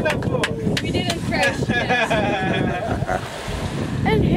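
Wind buffeting the microphone over the running Yamaha Enduro two-stroke outboard of a small wooden boat at sea, with people's voices heard over it in the middle.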